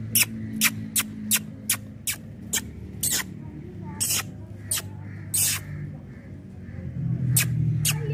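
A series of short, sharp clicks, about three a second at first and then more spaced out, over a low steady hum.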